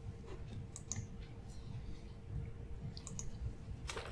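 Faint, scattered clicks, a handful over a few seconds, over a low rumble and a faint steady hum.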